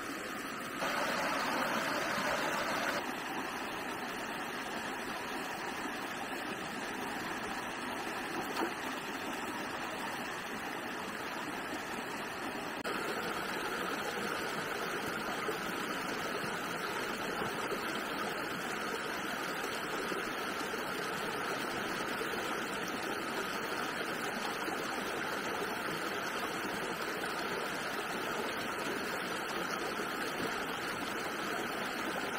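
Shallow rocky stream running over stones: a steady hiss of flowing water. It steps up louder suddenly a little under halfway through and stays at that level.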